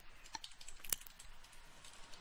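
Faint computer keyboard keystrokes: a handful of scattered clicks, one a little louder about a second in.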